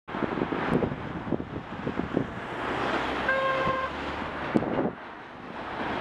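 Car horn of an oncoming Peugeot, one short toot of about half a second about three seconds in, a warning at a car overtaking into its lane. Under it runs a steady rush of wind and road noise.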